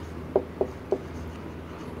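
Marker pen writing on a whiteboard, with three short squeaks from the tip in the first second.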